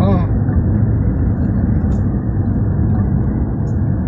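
Steady low rumble of a moving car's engine and tyres on the road, heard inside the cabin.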